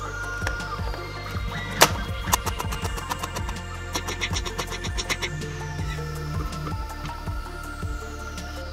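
Background music with a steady beat, over sharp cracks of a robotic knife chopping a tortilla chip on a wooden cutting board. The loudest crack comes about two seconds in, and a quick run of chops follows around four to five seconds in.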